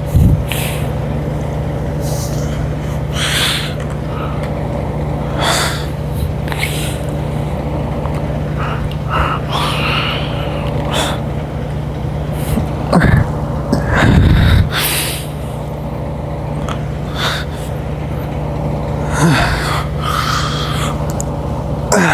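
A man's sharp, forceful exhales, one every couple of seconds, as he pulls a cable pulldown through repeated reps, over a steady low hum. A couple of heavier low thumps come a little past halfway.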